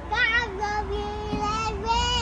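A toddler's voice holding one long, slightly wavering note: a play driving noise made at the wheel of a truck.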